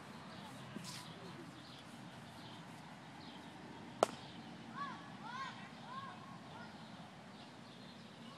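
Faint outdoor background with one sharp click about halfway through, then a run of four or five short rising-and-falling bird chirps.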